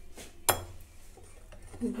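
Wire whisk beating cake batter in a glass bowl, with one sharp clink of the whisk against the glass about half a second in.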